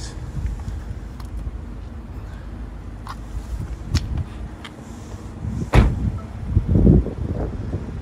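BMW 430i convertible's turbocharged four-cylinder engine idling with a low steady rumble, running smoothly. A few knocks sound over it, with a loud thump about six seconds in.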